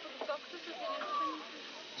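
Meat sizzling in hot frying pans as it is seared, a steady faint hiss, with faint voices in the background.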